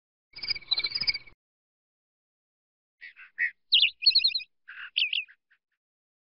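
Short bird calls in two separate bursts: about a second of trilled calling half a second in, then after a pause a quick run of high chirps and trills lasting about two and a half seconds.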